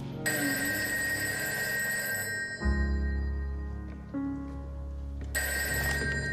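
A rotary telephone's bell ringing in two rings of about two seconds each, the second starting near the end, over slow background music with low held notes.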